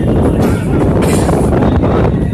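Wind buffeting the microphone at an open window of a moving passenger train, over the train's running noise on the track.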